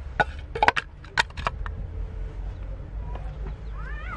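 A brick being set down in a stainless-steel bowl: a handful of sharp knocks and clanks of brick on metal within the first second and a half, then it settles.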